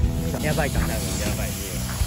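Voices talking over background music, with a steady low rumble and hiss underneath.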